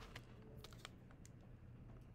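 Faint, irregular light taps and clicks over near silence, a few in quick succession around the first second.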